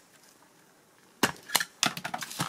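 Quiet handling, then about a second in three sharp clicks in quick succession: the plastic and metal parts of a water heater's spring-loaded switch assembly clicking and snapping as they are worked apart by hand.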